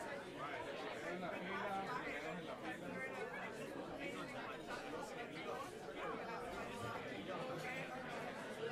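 Audience chatter: many people talking at once in overlapping conversations, with no music playing.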